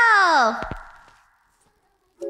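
A young woman's voice holding out an exclaimed "go" that slides down in pitch and fades out about half a second in, followed by near silence.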